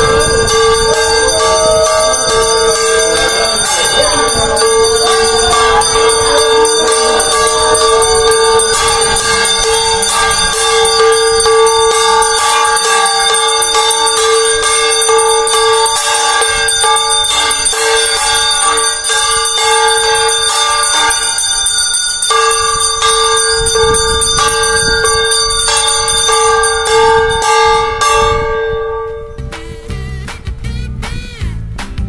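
Temple bell rung continuously during the pooja worship at the shrine, a dense, steady ringing with a brief break about two-thirds of the way through. The ringing stops shortly before the end.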